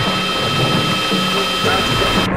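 Industrial noise music: a dense wall of noise with steady thin high tones over a low pitched drone that shifts in pitch about every half second.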